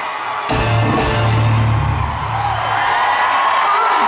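Live pop concert music over an arena sound system without vocals: after a short lull, a heavy bass-and-drum beat comes in about half a second in and carries on.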